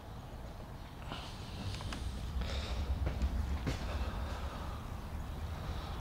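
Handling noise from a handheld camera being moved: a low rumble with a few faint taps and scuffs.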